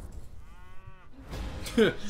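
A man's drawn-out "oh" groan that falls in pitch near the end, the loudest thing heard. It comes after a short, thin whine that rises and falls about half a second in.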